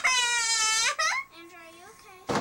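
A young child's long, high-pitched squeal lasting about a second, then a short yelp and softer, broken vocal sounds.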